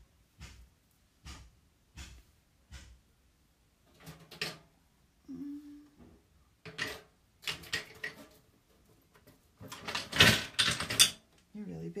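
Crafting supplies being handled on a tabletop: a few light taps and clicks, then scattered clattering and rustling, loudest about ten seconds in.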